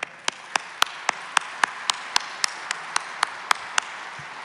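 Audience applauding, with sharp single claps standing out at a steady pace, a little under four a second, over the general clapping.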